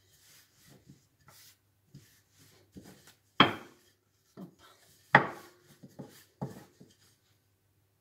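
Long, thin wooden rolling pin rolling out a sheet of homemade pie dough on a floured wooden board: soft rubbing, broken by a few sharp wooden knocks, the loudest two about three and a half and five seconds in.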